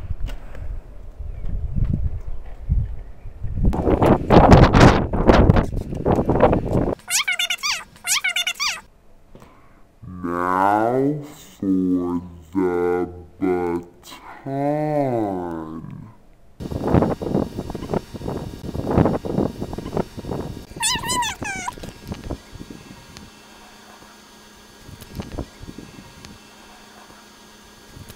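Rushing noise on the microphone, then a girl's voice making long, wavering, sing-song silly noises, cat-like in places. Brief high squeals come about eight seconds in and again past the twenty-second mark.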